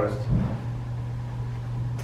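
A steady low hum of room noise, with one brief low sound about a third of a second in.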